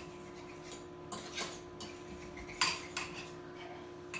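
A fork stirring in a bowl of soy milk and cornstarch, clinking against the bowl's sides several times at irregular intervals as it breaks up the cornstarch clumps. The loudest clink comes a little past the middle.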